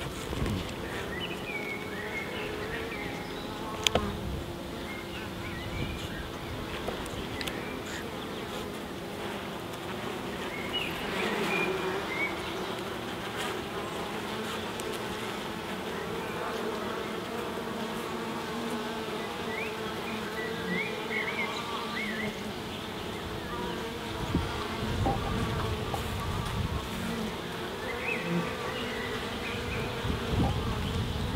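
Honeybees humming steadily from an open hive as its frames are worked, with a single sharp knock about four seconds in.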